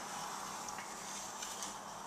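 Quiet room tone: a low steady hiss with a faint hum and a couple of tiny ticks, no distinct sound event.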